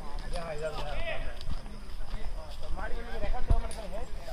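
Indistinct voices of people talking, with a single sharp thump a little past three seconds in.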